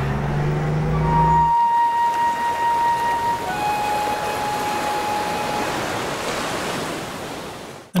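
Sea surf breaking on a rocky shore: a steady rush that cuts off just before the end. A low steady hum comes first and stops abruptly about a second and a half in.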